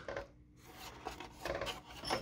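Faint rubbing and scraping of a finger pushing down the white lever of a pachinko machine's ball-empty microswitch, the lever that shuts off the ball-empty light.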